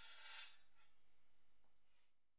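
Faint metallic scrape of two steel longsword blades sliding against each other in a bind, stopping about half a second in; then near silence.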